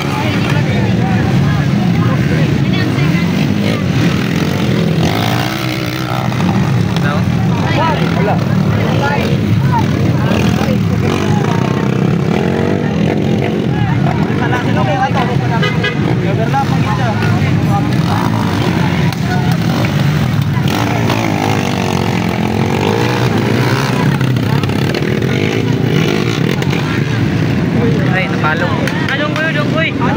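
Several small underbone motorcycle engines revving and running, with crowd voices throughout.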